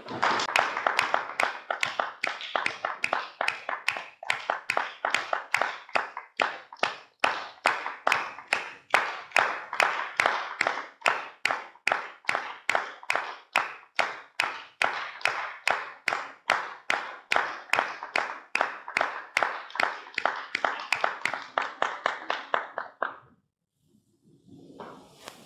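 Audience clapping in unison to a steady beat, about two and a half claps a second, stopping shortly before the end.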